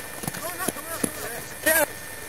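Young people shouting short calls to each other while running on a field, with light knocks of footsteps between the calls; one louder yell near the end.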